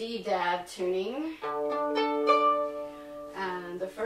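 A fiddle sounding a sustained, steady double stop on its low strings, starting about a second and a half in, after a brief bit of speech. It lasts about two seconds and fades slowly.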